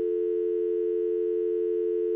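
Telephone dial tone: two steady tones sounding together as one unbroken hum, the open line heard once a call has ended.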